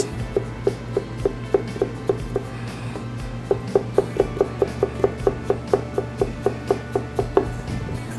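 Chef's knife dicing stone fruit on a plastic cutting board: a steady run of short knocks, about three a second, over background music.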